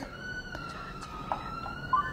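A faint, steady high-pitched wailing tone that drifts slowly up and down in pitch, siren-like, with a few light clicks.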